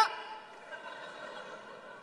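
Faint audience laughter and murmur in the pause after a crosstalk punchline, a low even crowd sound with no voice on stage.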